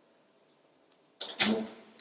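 Near silence, then a little over a second in a short, loud rush of noise on a handheld microphone held close to the mouth.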